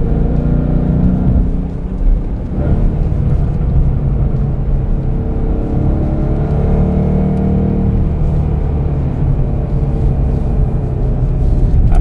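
The 2013 Ford Mustang Boss 302's hand-built 5.0-litre V8 pulling under acceleration, heard from inside the cabin. Its level dips briefly about two seconds in, then it pulls on steadily.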